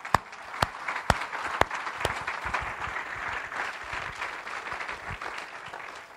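Congregation applauding: a few loud, sharp claps about two a second at first, then a steady wash of clapping that slowly dies down.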